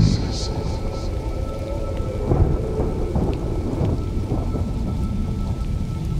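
Loud club music through a venue sound system, recorded on a phone: a dense, rumbling bass-heavy stretch with no clear beat, between the lines of a spoken vocal sample.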